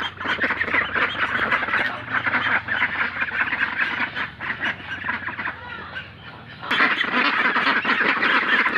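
A flock of Pekin ducks quacking together, many calls overlapping without pause. It eases a little past the middle and is loud again near the end.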